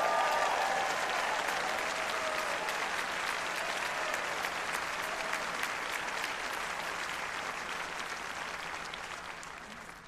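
Audience applauding, with a few voices calling out in the first second or so; the applause is loudest at the start and slowly dies away toward the end.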